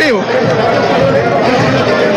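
Crowd chatter with music playing in a large hall, steady throughout, just after a man's last spoken word.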